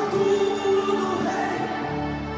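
Live gospel worship music: many voices singing long held notes over sustained accompaniment, with no drum beat.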